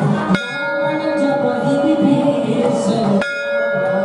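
Temple bell struck twice, about three seconds apart, each strike ringing on and dying away, over voices chanting and a steady drone.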